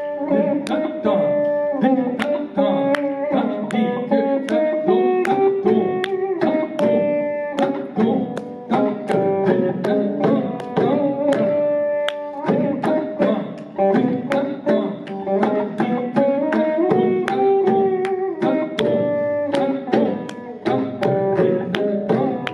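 Saraswati veena playing a Carnatic melody in raga Panthuvarali, its plucked notes bending and sliding between pitches, over steady percussion accompaniment.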